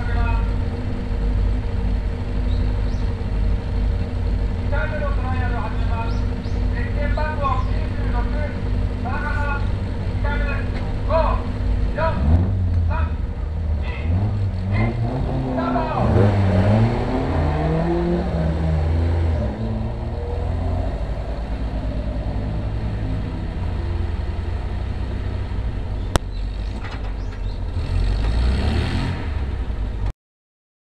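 A classic sports car's engine idling at a hillclimb start line, then revved up and down several times, its pitch rising and falling. Near the end the engine swells again as the car pulls away from the line.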